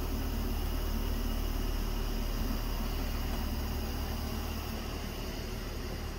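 Steady low hum under a faint even hiss, with no distinct events: unidentified background noise.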